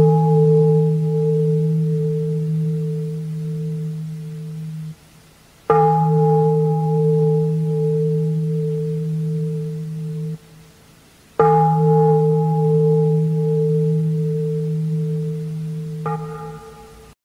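A large bowl bell struck at an even slow pace. It is still ringing from a strike just before, then is struck twice more, about every six seconds. Each strike gives a low ringing tone with a few higher overtones that fades for about five seconds and then cuts off sharply.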